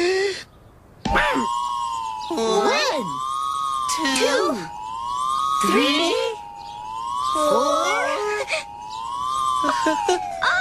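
A siren-like whistling tone that slowly wavers up and down in pitch, played as a sound effect while the ball swings around the bar. Excited puppet voices call out over it several times.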